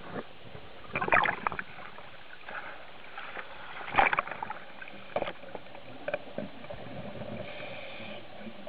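Muffled water noise picked up through an underwater camera housing, with bursts of bubbling and splashing; the loudest burst comes about four seconds in, as the camera is at the surface among waves.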